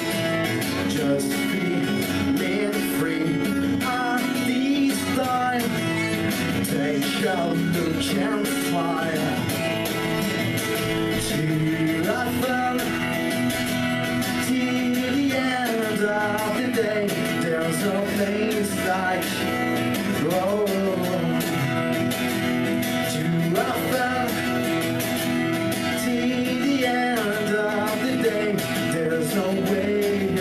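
A man singing while steadily strumming an acoustic guitar: a live solo song.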